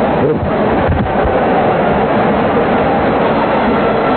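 Football stadium crowd noise, loud and steady, heard through a narrow-band old television broadcast.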